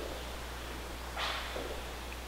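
Quiet room tone with a steady low hum, and one soft rustle a little over a second in.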